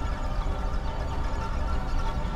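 Arturia Pigments software synthesizer playing the 'Photon Probes' granular texture preset: a dense, steady sustained texture with a deep low rumble under a cluster of held tones and a fine, grainy shimmer on top.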